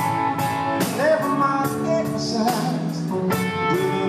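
Live blues-rock band: a male lead vocal over electric guitar, bass and drums, with regular drum and cymbal hits keeping the beat.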